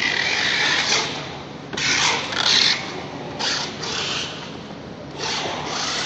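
Packing tape and cardboard cartons being worked by hand: a series of short rasping, scraping bursts, each under about a second long.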